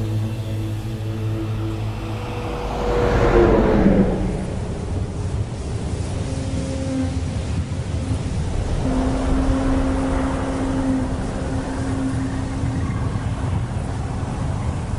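Low road rumble of a moving car under held low tones. About three seconds in comes a loud whoosh that falls in pitch. A steady low rumble with faint held tones follows.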